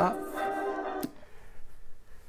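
Music track playing through the haunted radio prop's small speakers, cutting off with a sharp click about a second in as the prop is switched off.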